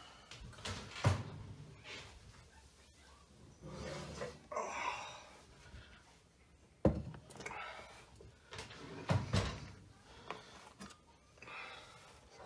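Oven door and a hot enamelled Dutch oven being handled: a few separate knocks and thumps as the pot is lifted out of the oven and set down on a granite countertop.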